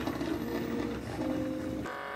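Small electric motor and gears of a battery-powered toy train engine running steadily.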